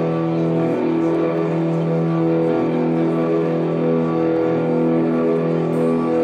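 Ambient drone music: one sustained chord of many layered tones held steady, with slight wavers in pitch among its middle notes.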